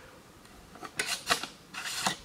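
Handling noise from the camera on a broken tripod being adjusted by hand: a few short, scratchy rubbing strokes starting about a second in, after a quiet moment.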